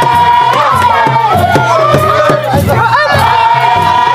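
Gumuz traditional dance music: large ground-set drums beating a steady rhythm under a loud, high melody of long held notes that slide up and down, with rattling from dancers' leg rattles.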